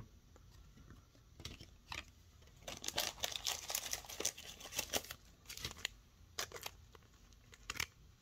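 Crinkling and tearing of a foil trading-card pack wrapper and handled cards, busiest between about two and a half and six seconds in, with small clicks scattered through.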